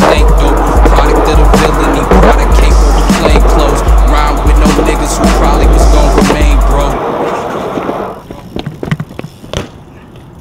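Hip-hop music with a heavy bass beat, which cuts off about seven seconds in. After it, a BMX bike rolls on concrete with a few sharp knocks and clacks near the end.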